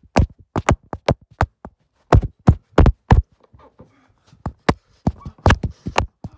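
Rapid, irregular knocks and thumps of blows striking a phone camera held as the viewer's face: about a dozen hits in six seconds, with a short lull a little past the middle.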